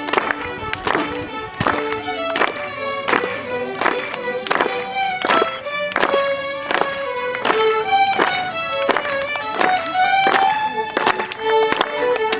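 Several fiddles playing a folk dance tune together over a steady beat.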